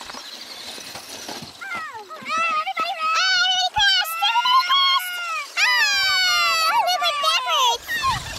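Children's high-pitched voices calling and shouting without clear words, some calls drawn out and sliding in pitch, starting about two seconds in.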